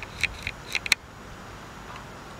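Steady outdoor background noise, with a quick run of about six short, sharp clicks in the first second.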